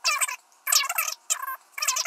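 Coffee poured from a glass server into small fired-ceramic cups, the liquid splashing into the cups in about four short spurts.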